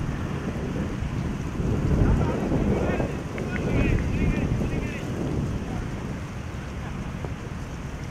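Wind buffeting an outdoor camera microphone: a low rumble that swells in gusts about two and four seconds in, then eases.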